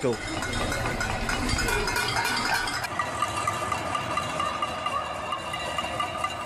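Cacerolazo: many people banging pots, lids and pans from apartment balconies in protest, a continuous dense clatter of metal strikes with ringing tones, and voices mixed in.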